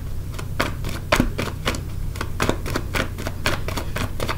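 Tarot cards being shuffled by hand: a quick, irregular run of crisp clicks and slaps as the cards strike one another, over a low steady hum.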